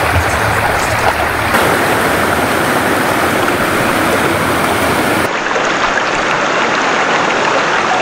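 Floodwater flowing: a loud, steady rushing noise that changes abruptly in tone twice, about a second and a half in and again about five seconds in.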